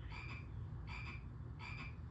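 Three cartoon frog croaks from the Nick Jr. frogs logo, evenly spaced about three-quarters of a second apart. They play through a television and are picked up across the room, over a steady low hum.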